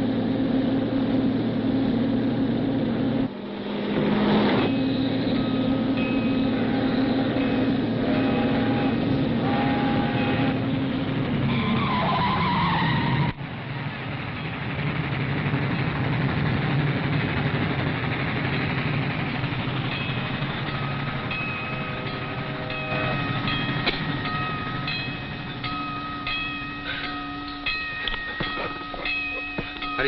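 A car speeding alongside a train: a long, steady train whistle that glides down in pitch about twelve seconds in and then cuts off suddenly. Quieter car and road noise follows.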